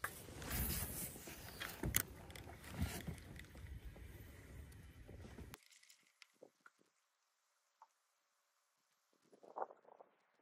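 Wind rumbling on the microphone with a few sharp knocks, cutting off suddenly just past halfway to near silence.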